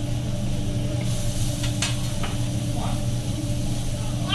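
Meat and vegetables sizzling on a steel teppanyaki griddle, with a few sharp clicks of the chef's metal spatula against the plate. A steady low hum runs underneath.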